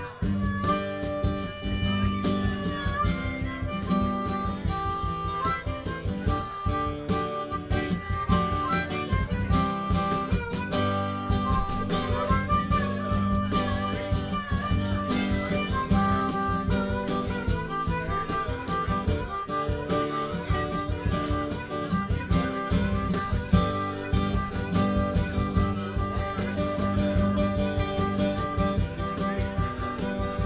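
Instrumental break in a band's song: a harmonica carries the lead over guitar and a steady beat.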